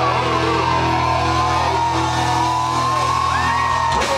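Rock band playing live in a club, electric guitars and bass holding a long sustained chord, with a high held note that slides upward about three seconds in.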